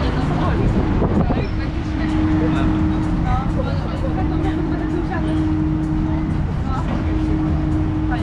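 Amusement ride's machinery giving off a steady hum over a low rumble, the hum dropping out briefly about a second in and again now and then, with riders' voices chattering over it.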